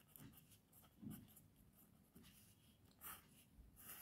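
Faint scratching of a pen writing on paper in a few short strokes, as words are written and a line is drawn.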